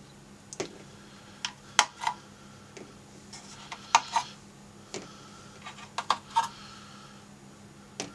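Plastic bulb sockets being twisted a sixteenth-turn counterclockwise and lifted out of a 1984–89 Corvette digital instrument cluster's circuit board: a string of sharp, irregular small clicks and taps, some in quick pairs.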